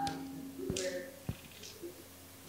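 A sharp click, then two soft, low knocks about half a second apart, over a faint steady hum and faint murmured voice.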